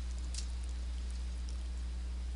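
Steady low electrical hum with a faint hiss, the background of a desk recording setup, and a few faint computer-mouse clicks as a zoom box is dragged on screen, the clearest about a third of a second in.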